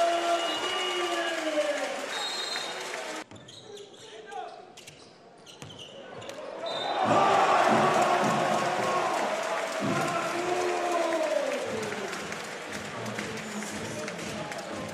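Basketball game sound in an arena: a commentator's voice over crowd noise, with ball bounces and court sounds. About three seconds in the sound drops suddenly at an edit. It stays quieter for a few seconds, then the crowd and commentary swell loud from about seven seconds in.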